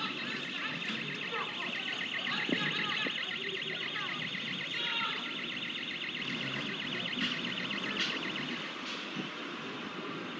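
An alarm ringing with a fast, even pulse over street noise and voices; it fades out near the end.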